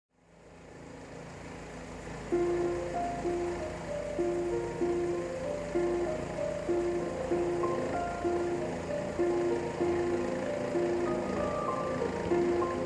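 Instrumental background music fades in, and a melody of held notes enters a little over two seconds in, over a low, steady rumble.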